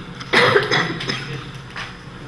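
A person coughing once, loudly, about a third of a second in.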